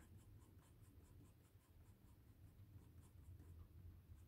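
Faint scratching of an HB graphite pencil making short hatch marks on sketchbook paper, about five quick strokes a second.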